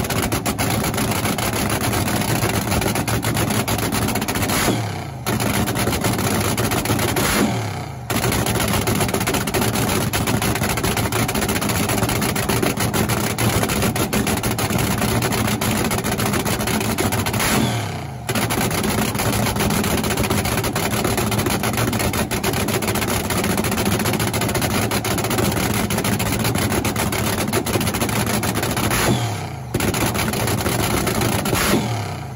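Supercharged V8 of a vintage front-engine dragster running at idle with a loud, rough, crackling cackle, broken by four brief drops in level.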